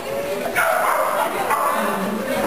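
A dog barking, starting suddenly about half a second in, over people's voices.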